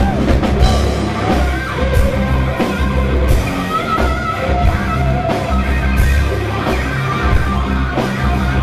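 Heavy metal band playing live, loud: distorted electric guitar, bass guitar and drums with cymbal crashes, the guitar line bending in pitch.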